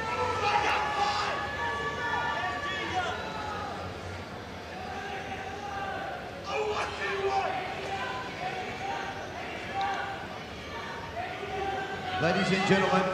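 Indistinct voices over a steady background crowd murmur, no single speaker clear.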